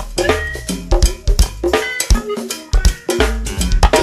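Live go-go band groove: a cowbell and drum-kit pattern over bass and pitched instruments, played without a break. The bass drops out for about a second in the middle and then comes back in.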